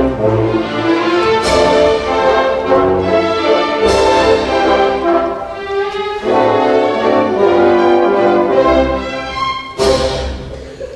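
Orchestra playing ballet music with the brass prominent. Sharp crash accents come about a second and a half in, at about four seconds, and again near the end.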